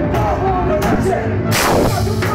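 Live band music with violin, double bass and drums, a wavering melody line over a steady low end. A loud crash, likely a cymbal or drum hit, comes about three-quarters of the way through.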